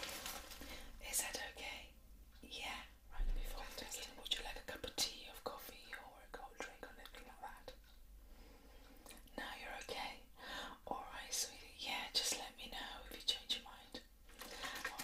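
A woman whispering in short phrases.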